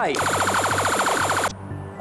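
Game-show face-off buzzer as a contestant buzzes in: a harsh, rapid buzz of about fourteen pulses a second that lasts about a second and a half and cuts off suddenly.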